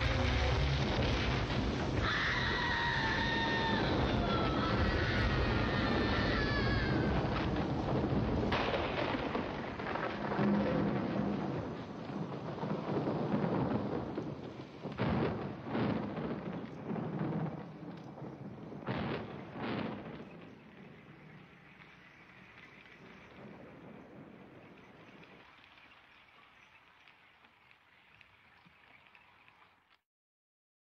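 Soundtrack thunderstorm: rain with thunderclaps, the sharpest cracks coming around 15 and 19 seconds in. A high wavering sound slides downward between about two and seven seconds in, and the storm fades away over the last ten seconds.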